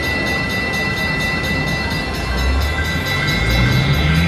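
A WMS Vampire's Embrace slot machine sounding its jackpot hand-pay alert: a steady, high electronic tone held over lower sustained tones and a rumble, marking a win large enough to lock the machine for an attendant.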